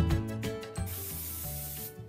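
Aerosol can of Batiste dry shampoo spraying onto hair: a steady hiss lasting about a second, starting just under halfway through, over background music.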